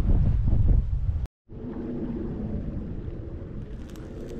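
Wind buffeting the microphone in a loud low rumble, which cuts off sharply about a second in; after that comes a steadier, quieter wind noise with a faint low hum.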